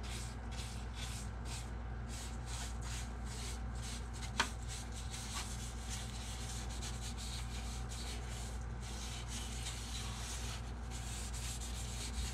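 Sandpaper rubbing stain into a wooden guitar body by hand, in quick back-and-forth strokes about three a second, with a single sharp click about four and a half seconds in.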